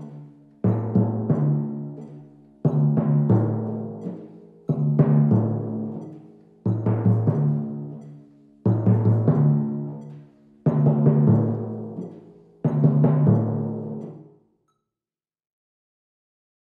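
A pair of timpani, the low drum tuned to A and the high one to D, struck with felt mallets in short groups of three or four strokes about every two seconds. Each group rings low and is stopped on the rest by damping the heads. The last group ends about a second and a half before the end.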